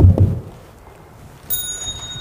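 Heavy thumps of a microphone being handled and set down on a table, then about a second and a half in a high, steady bell-like ring starts.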